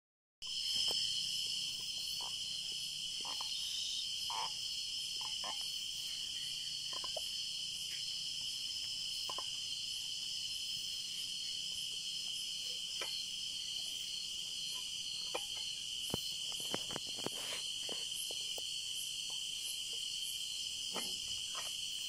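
Steady high chirring of a crickets' chorus, unbroken throughout. Scattered light clicks and knocks come and go, a cluster of them about two thirds of the way in, as a refrigerant can, its can tap and the charging hose are handled.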